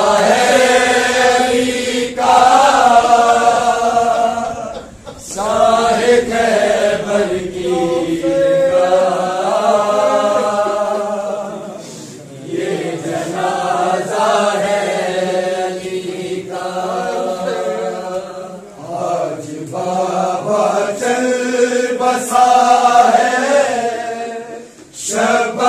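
A crowd of men chanting a noha, a Shia mourning lament, together in unison, in long sung phrases with brief breaks between them.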